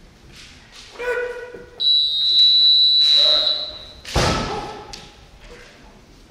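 Kendo exchange in a large wooden hall. A kiai shout comes about a second in, then a steady high tone holds for about two seconds. About four seconds in, a sharp loud thud of a strike or stamping footwork on the wooden floor is followed by another shout.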